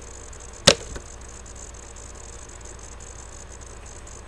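A single sharp knock just under a second in, followed by a fainter tap, over a steady background hiss.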